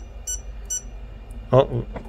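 Two short high-pitched key beeps from a Lewanda B200 battery tester's keypad as the up-arrow button is pressed to step the load-current setting up.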